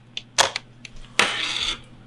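Plastic button and pop-up flash of a cheap toy-like camera being worked: a few small clicks, then a sharp plastic snap about a second in as the flash springs open, followed by a brief rustle of handling.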